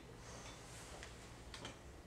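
Quiet classroom room tone: a faint steady low hum, with a few faint short ticks about one and a half seconds in.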